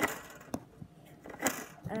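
A few short, sharp clicks and knocks of close handling, the strongest right at the start and others about half a second and a second and a half in.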